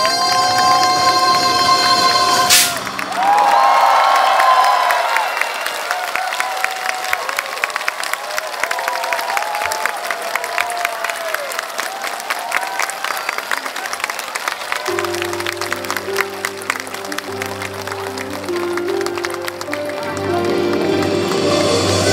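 A song ends on a held note with a sharp final hit about two and a half seconds in, and a large audience applauds and cheers. About fifteen seconds in, low sustained music notes come in under the fading applause.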